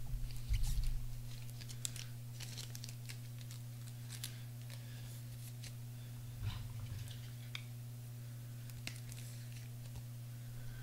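Trading cards and plastic packaging being handled on a table: scattered crinkles and light clicks, with a low bump about half a second in and another after six seconds, over a steady low hum.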